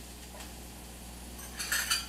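Kitchen utensils clinking and clattering briefly, about one and a half seconds in, after a quiet stretch.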